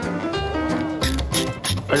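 Background music, and from about a second in, rapid clicking of a ratchet screwdriver turning a screw on an LED recessed-light fitting.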